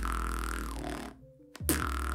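Beatboxer's inhaled sub-bass (808) lip roll, a deep buzzing drone from the lips shaped on an 'oh' vowel. It is held for under a second, breaks off, and starts again with a click about a second and a half in.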